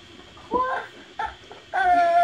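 A baby doll's built-in baby-crying sounds: short cries about half a second and a second in, then a longer cry near the end.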